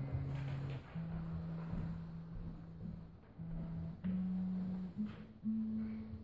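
Quiet instrumental introduction from a small acoustic ensemble of cello and guitar: a few long, low held notes, each about a second, climbing step by step in pitch.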